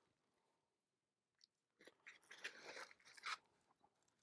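Faint crinkling and rustling of plastic shrink wrap and a cardboard LP jacket being handled and opened by hand, starting about two seconds in after a near-silent pause, with a small louder crackle near the end.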